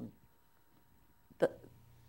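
A woman's speech: the tail of a drawn-out "um", a pause of about a second, then an abrupt, clipped "the" as she starts talking again.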